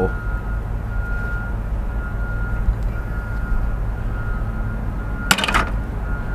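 Steady low rumble of heavy construction machinery running, with a faint whine that comes and goes. About five seconds in, a brief clatter of metal on metal.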